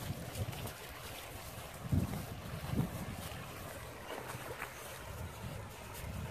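Shallow river rushing over rocks, a steady wash of water, with gusts of wind buffeting the microphone in low thumps about two and three seconds in.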